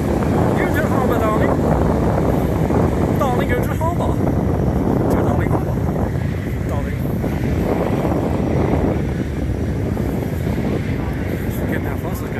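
Wind buffeting a moving phone's microphone, a steady low rumble, with a few brief snatches of voices in the first half.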